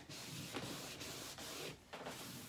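Cloth rag buffing liming wax over a painted wood dresser top, a steady rubbing hiss with a brief break near the end.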